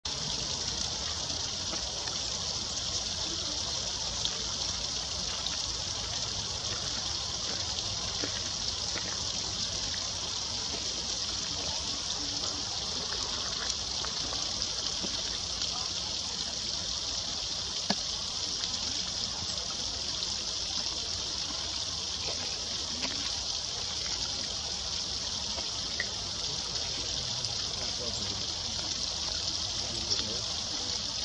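Small water cascade running steadily over rocks, a continuous trickling and splashing, with a few faint ticks now and then.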